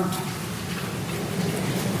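A steady hiss of background noise with no speech.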